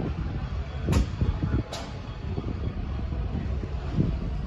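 A single-decker Stagecoach service bus's diesel engine rumbling as the bus pulls away from the stop. There is one short, sharp sound about a second in.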